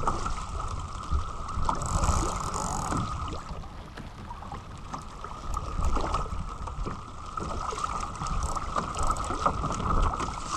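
Sailing dinghy under way under spinnaker: wind buffeting the microphone and water rushing and splashing along the hull, with small scattered knocks.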